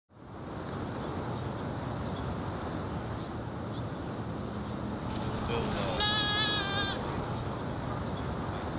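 A goat bleating once, a quavering call of about a second, about six seconds in, over steady outdoor background noise.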